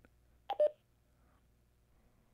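AnyTone AT-D878UV II Plus handheld DMR radio giving a short two-note beep, high then lower, about half a second in: the talk-permit tone as its push-to-talk key is pressed to transmit to the hotspot.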